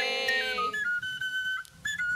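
Background film-score music: a thin, high flute-like line holding and stepping between a few notes, with a fuller sustained note that fades out about halfway through.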